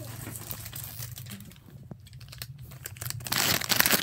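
Crinkling and crackling of a snack wrapper being handled, with scattered small clicks that build into a dense burst of rustling near the end, over a low steady hum.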